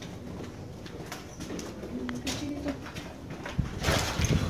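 A bird's low call of a couple of short notes about halfway through, among scattered faint clicks, with a thump near the end.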